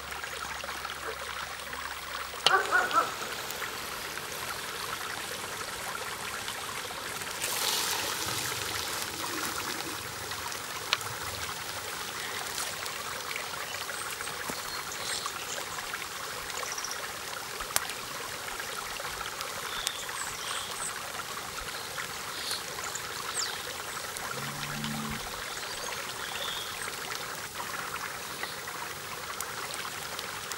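Steady rush of flowing stream water, with a brief loud clatter about three seconds in and a few single clicks later on.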